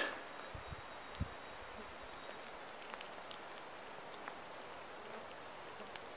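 Quiet woodland ambience: a faint, even outdoor hiss with a few soft low thumps in the first second or so and scattered faint ticks, like light rustling or handling.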